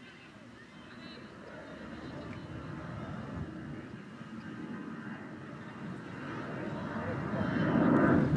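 Distant voices of players calling out on a football pitch over an outdoor rushing noise that builds up and is loudest near the end.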